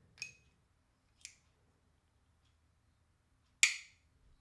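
Bolster-activated automatic folding knife with a liner lock clicking as it is worked by hand: a sharp metallic click with a short ring, a smaller click about a second later, and a louder snap near the end as the blade goes shut.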